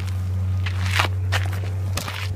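Scuffing footsteps and rustling clothing close to a phone's microphone during a handcuffing arrest: about five short scrapes, the loudest about halfway, over a steady low hum.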